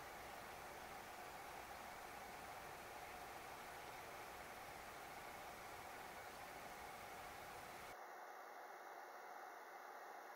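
Near silence: faint steady hiss of room tone, whose low rumble drops away about eight seconds in.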